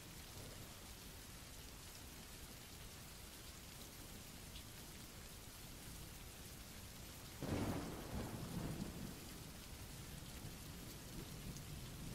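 Faint, steady rain with a low rumble of thunder that rolls in about seven and a half seconds in and dies away over about two seconds.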